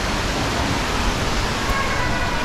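Steady rushing noise of a busy shopping-mall atrium: water from an indoor fountain blended with crowd hubbub. A faint steady tone comes in near the end.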